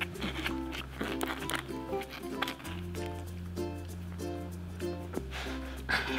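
Background music: a held bass line that changes note about every two and a half seconds under short repeated plucked notes.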